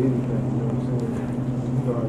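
A steady low hum that holds one unchanging pitch with an overtone above it, with no rise or fall.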